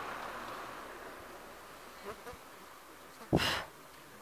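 A flying insect buzzing close by, a hum that fades away over the first second or two. Near the end comes one short, loud sigh close to the microphone.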